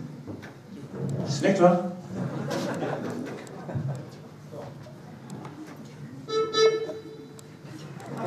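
Indistinct voices and stage noise, with one short held pitched note a little over six seconds in.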